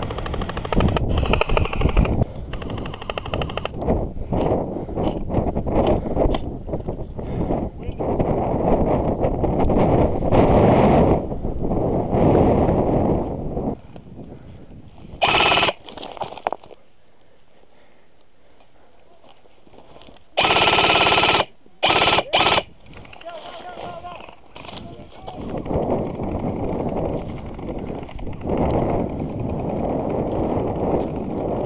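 Systema PTW electric airsoft rifle firing short full-auto bursts: one about halfway through, then three close together about five seconds later. Before the shooting, gusting wind buffets the microphone.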